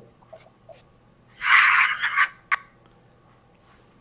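A person's short breathy exhale, like a voiceless laugh in a few quick pulses, about a second and a half in, followed by a single sharp click.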